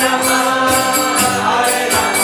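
Devotional chanting in a mantra style: voices singing over a harmonium's held chords and a strummed nylon-string acoustic guitar, with jingling hand percussion keeping a steady beat.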